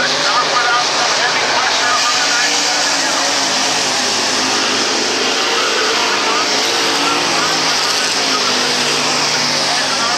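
Pro stock dirt-track race car engines running hard at racing speed as the cars circle the oval, a steady, loud blend of several engines, with voices over it.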